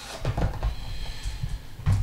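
Cardboard smartphone box being opened by hand: the printed sleeve slides off and the inner box is handled, with irregular scraping and rubbing of card, and a sharp knock near the end.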